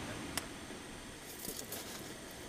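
Steady wash of surf and wind on a shingle beach, with one sharp click about a third of a second in and a short run of small clicks near the end.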